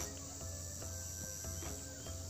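Faint background room tone between spoken lines: a low hum and a steady high-pitched whine.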